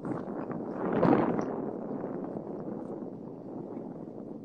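Steady rushing noise of a car's cabin picked up by a phone microphone over a video call, swelling briefly about a second in.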